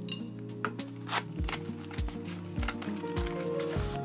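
Background music over cardboard packaging being handled: a string of short scrapes and knocks as a cardboard box is opened and a cardboard insert is pulled out.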